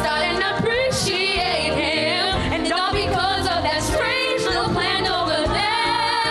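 Two girls singing together into handheld microphones over instrumental accompaniment, their held notes wavering with vibrato and a long note held near the end.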